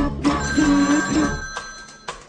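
Two puppet voices hold a sung 'doo' note in unison over the band, and the singing breaks off about a second and a half in. About half a second in, an old desk telephone's bell starts ringing, a steady high ring that lasts until the end.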